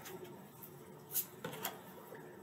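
Tarot cards being handled: a few short, soft swishes of cards sliding against each other, the loudest about a second in.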